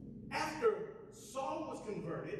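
A man's voice at the pulpit microphone: a sharp, audible gasp of breath about half a second in, then a short wordless vocal sound near the end, in the rhythm of impassioned preaching.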